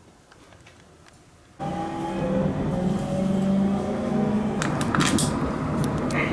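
Near silence for about a second and a half, then the inside of a moving train cuts in suddenly. It is a steady running noise with several tones slowly rising in pitch as the train picks up speed, and a few sharp clicks near the end.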